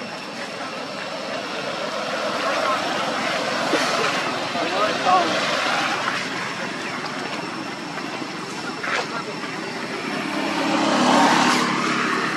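Road traffic noise with voices mixed in; a motor vehicle grows louder near the end.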